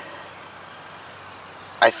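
Steady outdoor background noise: an even hiss with no distinct events during a pause in talk. A man starts speaking near the end.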